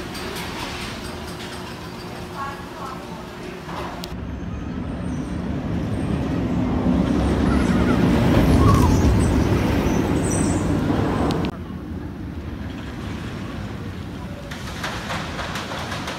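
The Bat suspended roller coaster's train running along its steel track, a low noise that builds to a loud peak about eight seconds in and then cuts off sharply. Faint voices and station ambience before and after it.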